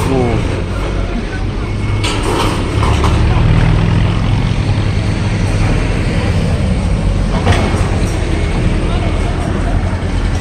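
Diesel engines of heavy construction machinery running steadily, a deep rumble that rises and grows louder about three seconds in.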